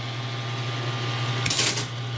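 ASR-33 Teletype running with a steady motor hum, and about one and a half seconds in a short burst of mechanical noise as its carriage returns after Enter is pressed.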